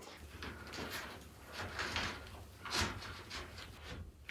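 Faint handling sounds of window screen repair: a few soft rustles and light knocks as a pull tab and the rubber spline are handled and pressed in at the corner of an aluminium screen frame.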